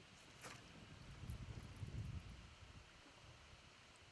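Faint low rumble of wind buffeting the microphone, with a brief high swish about half a second in from a spinning rod snapped through the air while snap jigging.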